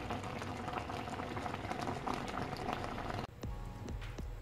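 Thick sugar syrup with fried ripe plantain pieces bubbling in a caldero on a gas burner, a steady run of small popping bubbles. The syrup has cooked down to the right point and the dessert is done. The sound cuts off abruptly a little after three seconds in.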